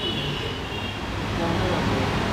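Steady low rumble of background noise with an even hiss above it and a faint high whine, like distant traffic or a running machine.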